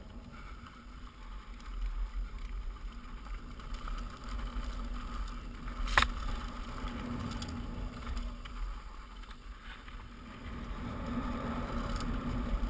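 Mountain bike rolling down a rocky dirt trail: a continuous low rumble of tyres on dirt and air rushing past the camera, with one sharp knock about six seconds in as the bike hits something on the trail.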